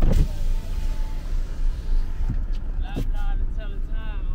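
Car engine idling, heard from inside the cabin as a steady low rumble.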